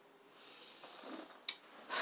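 A person drawing an audible breath in, followed about a second and a half in by one short sharp click, just before speech begins.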